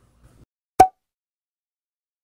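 A single short pop sound effect, a little under a second in, from an edited subscribe animation.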